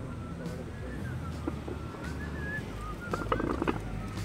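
Outdoor street ambience: a steady low rumble of traffic with birds chirping, and a short burst of sharp, rapid calls about three seconds in.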